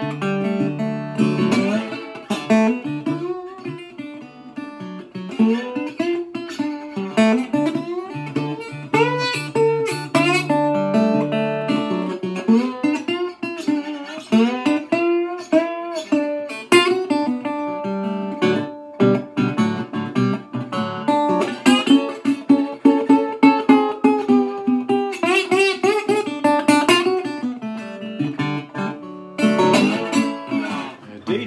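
Instrumental blues played on a National Reso-Phonic resonator guitar: plucked treble notes, many bending up and down in pitch, over low bass notes that hold steady through the first half.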